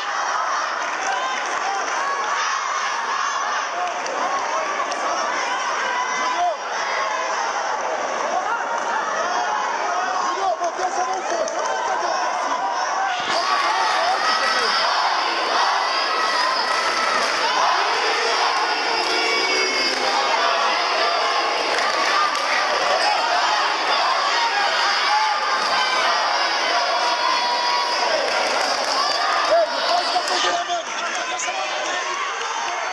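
A crowd of spectators shouting and cheering, many overlapping voices calling out at once with no pause.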